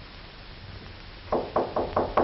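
A quick run of sharp wooden knocks, about five a second, starting just over a second in.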